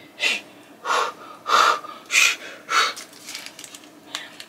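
A woman's breathy exhalations or gasps, five short puffs of breath a little under two a second, with no voiced speech.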